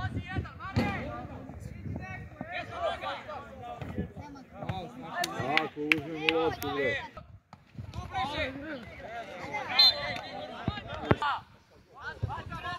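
Several voices shouting and calling out across a football pitch, with a few sharp knocks scattered among them, the loudest knocks near the end.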